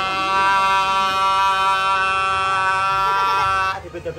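A single loud horn-like tone held at one steady pitch for about four seconds, cutting off sharply near the end.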